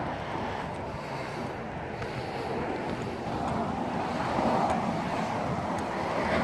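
Steady outdoor background noise with no distinct events, swelling slightly around the middle.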